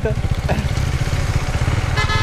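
Husqvarna Svartpilen 401's single-cylinder engine running steadily as the bike is ridden, a dense low pulsing under road and wind noise.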